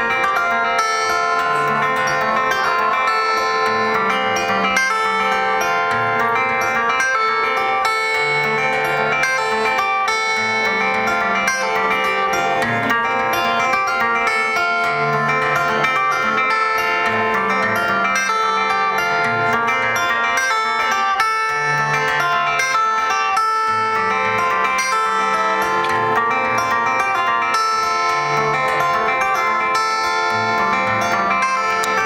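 Amplified acoustic guitar played live: an instrumental passage of ringing picked chords over a bass line that changes every second or two.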